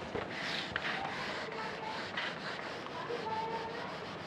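A duster rubbing across a whiteboard, wiping off marker writing, with a few brief faint squeaks.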